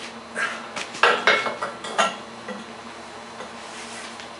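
Metallic clanks and clinks from a steel bench vise being worked to close on a battery cell, the loudest few coming between about one and two seconds in.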